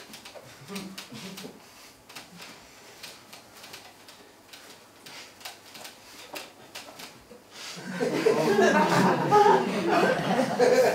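A quiet stage with scattered small clicks and knocks. From about eight seconds in comes louder, wordless laughter and chuckling.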